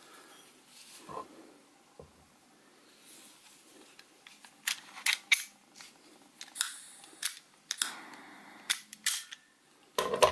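Sharp metallic clicks and light knocks from a homemade pistol-shaped lighter's parts being handled and fitted back together, a string of irregular clicks mostly in the second half.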